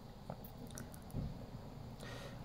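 Quiet handling noise with a few faint light clicks, as a candy squeeze-tube gel pen is pressed to dot sour gel onto a piece of taffy.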